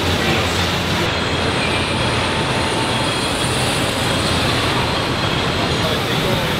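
Steady machinery din of a car assembly plant floor, with faint thin whines now and then.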